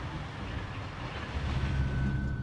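Snowplow truck driving with its front plow blade down, pushing snow along the street: a steady rumbling, scraping vehicle noise.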